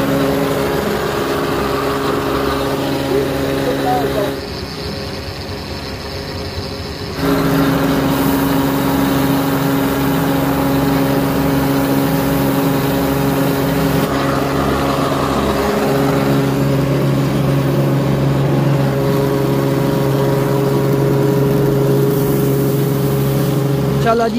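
Electric-motor-driven rice huller running steadily with a constant hum while paddy grain feeds through it and is husked into rice. The sound drops back for a few seconds about four seconds in, then returns at full level.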